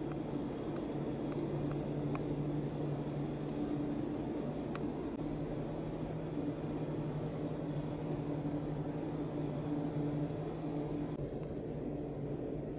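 Steady low mechanical hum, with two level low tones over a dull rumbling noise and a few faint clicks.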